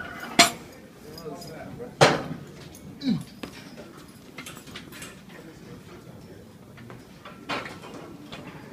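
Metal weight plates and barbell clanking, a few sharp knocks: one about half a second in, the loudest about two seconds in with a short ring, and another near the end, over low voices.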